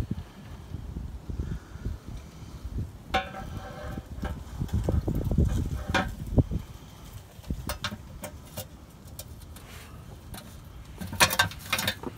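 Stamped steel automatic transmission pan being lifted and held up against the transmission by hand to be bolted back on: scattered light clunks and scraping, with a few short metallic clinks, loudest near the end.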